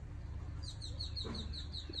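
A small bird singing a rapid trill of short, high, downward-sliding notes, about seven a second, starting a little way in, over a low steady hum.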